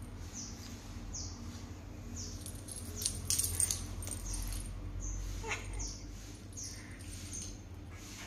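A tabby cat pouncing on and wrestling a feathered toy mouse on a string across a tiled floor, with a burst of scuffling and clicks about three seconds in. Short high chirps repeat roughly once a second over a steady low hum.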